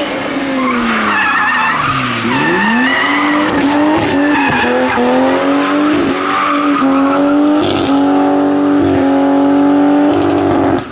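A BMW E30's engine drops in pitch as the car slows into a hairpin, bottoming out about two seconds in, then revs back up and is held at high revs. The tyres squeal and spin as the car drifts around the bend, pouring tyre smoke.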